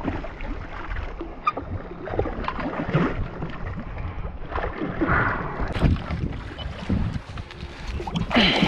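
Water splashing irregularly as a hooked king mackerel thrashes at the surface right beside a kayak, with louder splashes about three and five seconds in.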